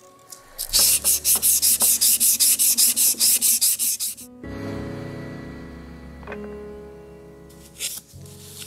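320-grit sandpaper on a hand block rubbed back and forth across a metal piece: quick, even rasping strokes, about five a second, for some three seconds. The strokes stop abruptly and background music with sustained chords carries on alone.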